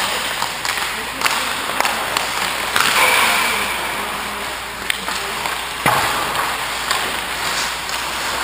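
Skate blades scraping on rink ice, with a few sharp clacks spread through and a longer scrape about three seconds in.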